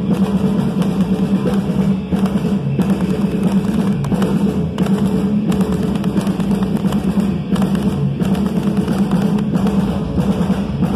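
Live rock band playing loud: a drum kit driving the beat, with electric bass and electric guitar.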